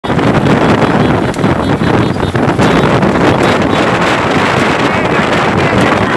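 Wind rushing over the microphone of a phone riding on a moving motorcycle, loud and steady, with motorcycle engine noise underneath and a few sharp knocks.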